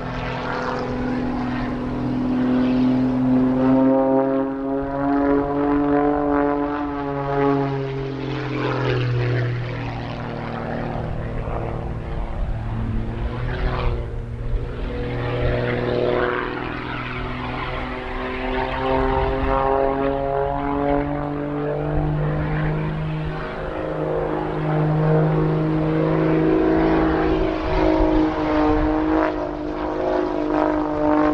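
Highly modified Pitts Special S2S aerobatic biplane's piston engine and propeller droning through an aerobatic routine, the pitch rising and falling several times as the plane climbs, dives and passes.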